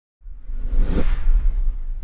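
Broadcast news logo sting: a whoosh sweeping up to a bright hiss that cuts off sharply about halfway through, over a heavy, steady deep bass rumble.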